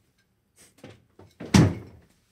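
A door being shut in a kitchen: a few light knocks, then one heavy thud about a second and a half in.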